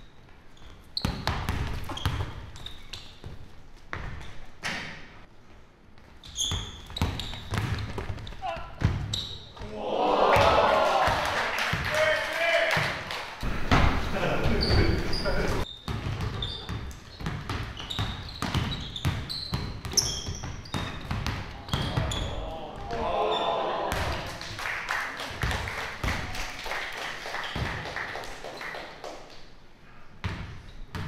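Basketball being dribbled on a hardwood gym floor, a run of sharp bounces, with short high sneaker squeaks from the players' footwork. Voices of onlookers rise loudly around ten seconds in and again after twenty seconds.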